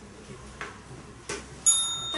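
A small metal bell struck once near the end, its high tone ringing on; in a timed debate this is typical of the timekeeper's bell marking the start of a speech.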